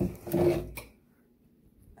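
A part sliding into a DJ flight case with a short scrape and bump, lasting under a second.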